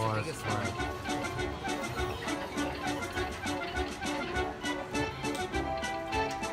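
Poker machine win music from a 5 Dragons High Limits machine: a repeating jingly tune with fast, regular ticks, playing while the win meter counts up during the bonus feature.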